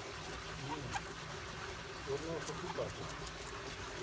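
A few short, soft clucks from hens, with light clicks from pecking and scratching in gravel.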